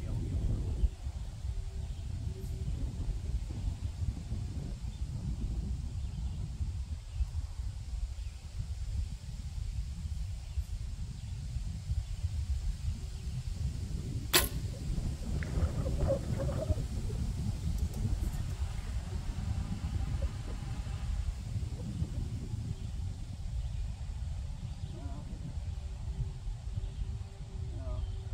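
A barebow recurve bow is shot once about halfway through: a single sharp snap of the string as the arrow is loosed. Gusty wind buffets the microphone throughout.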